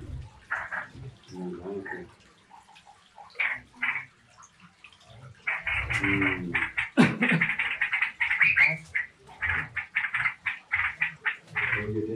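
Rapid, irregular rattling and scraping of a wire bird cage as it is handled and tipped at an aviary door. The noise is sparse at first and becomes a dense clatter from about halfway through.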